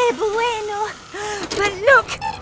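Animated characters' voices making a string of short wordless sounds, each sliding up or down in pitch, with a brief lull about halfway.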